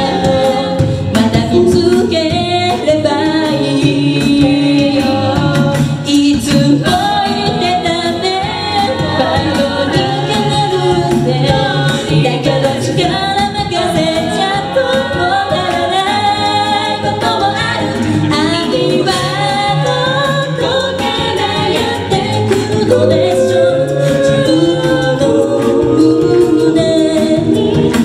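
Mixed male and female a cappella group singing in harmony through microphones, with a low bass line held under the higher voices.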